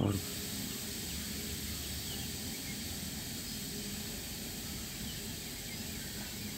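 Steady hiss of outdoor background noise, even throughout, with faint low murmurs beneath.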